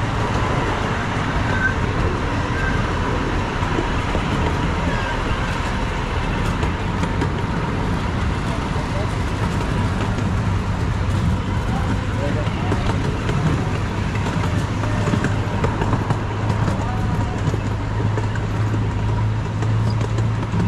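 Miniature park train running steadily, heard from an open passenger car: a continuous low engine hum with rolling noise from the wheels on the track. The hum grows stronger in the last few seconds.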